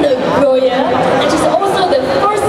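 A woman speaking into a handheld microphone, amplified in a large hall.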